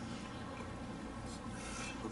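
Quiet prayer-hall room tone with a steady low hum and a few soft rustles, the strongest a little past the middle.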